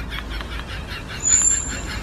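Outdoor background noise with a low rumble and faint scattered chirps, and a brief high, steady whistle-like tone lasting about half a second, a little past a second in.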